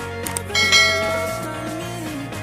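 A bell-ding sound effect for a subscribe button's notification bell. Two quick clicks come first, then a bright ring about half a second in that fades over a second, over a pop song playing underneath.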